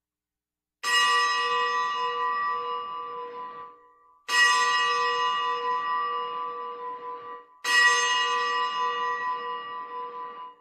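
Bells rung three times, each ring starting sharply and fading over about three seconds. They mark the elevation of the consecrated host at Mass.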